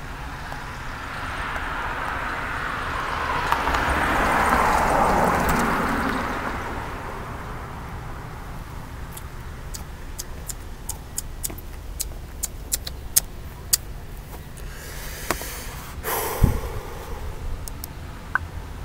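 A car passes along the street, its tyre and engine noise swelling over a few seconds and fading away. Later come light footsteps of sandals on a concrete sidewalk, approaching, then rustling and a knock from close to the microphone.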